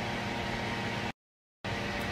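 Steady background hiss and faint hum of room ambience, broken just past halfway by a half-second dropout to dead silence before the hiss resumes.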